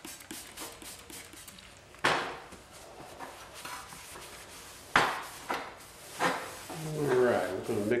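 Plastic trigger spray bottle squirting wax and grease remover in short hisses, about two seconds in and again about five seconds in, with a cloth rag rubbing over bare sheet metal between them.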